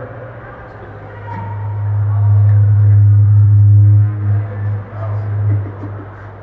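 Loud low hum from the press-conference microphone and PA system, swelling to its loudest in the middle, then wavering and dying away near the end: a fault in the sound system, likely low feedback.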